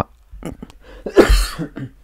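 A man coughing once, a sharp, noisy burst about a second in.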